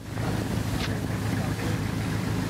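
Steady wind noise on an outdoor camera microphone, a loud even rumble and hiss.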